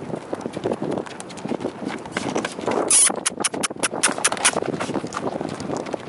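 Hoofbeats of a newly shod draft-cross horse on gravel as it is led in hand: irregular footfalls with gravel crunch, the horse breaking into a trot. Near the middle comes a quick run of about seven sharp clicks.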